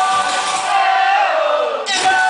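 Crowd and band shouting a chant together over a live band's music, the held vocal sliding downward shortly before the end.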